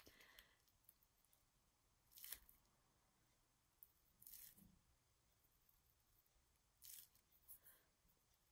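Near silence, broken by about four faint, brief rustles of a plastic piping bag being squeezed as buttercream rose petals are piped.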